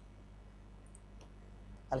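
A few faint computer mouse clicks, pasting a file, over a low steady room hum. A man's voice starts right at the end.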